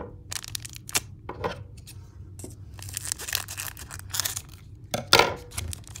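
Foil booster-pack wrapper crinkling in the hands and being torn open, with the loudest rip about five seconds in.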